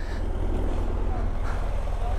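BMW F800 motorcycle's parallel-twin engine idling, a steady low rumble.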